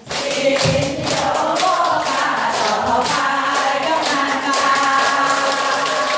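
A room of elderly people singing together in unison while clapping their hands in a steady rhythm.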